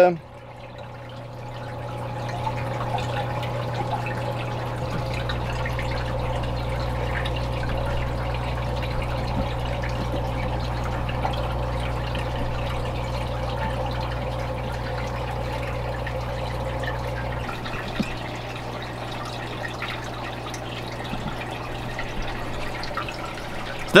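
Aquarium filter running: water trickling and splashing over a steady low hum, fading in over the first two seconds. A deeper hum joins for a stretch in the middle.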